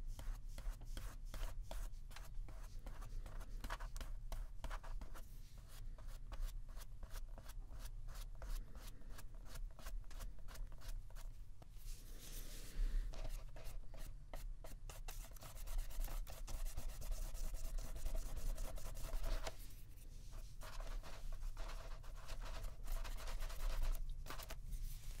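Small paintbrush dabbing and stroking watercolour onto a paper journal page in many short, quick strokes, with a brief hiss about halfway through.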